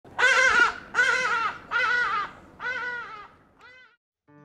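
Hadeda ibis calling: four loud, harsh, nasal honks about a second apart, each a little weaker than the last, then a short faint fifth near the end.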